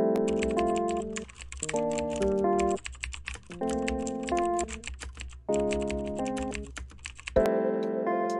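Rapid computer-keyboard typing, a dense run of key clicks that stops about seven seconds in, over background music of held keyboard chords that change every second or so.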